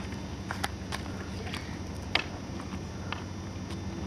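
A few scattered light clicks and knocks, the loudest about two seconds in, from a skateboard being picked up and carried on foot, over a steady low hum.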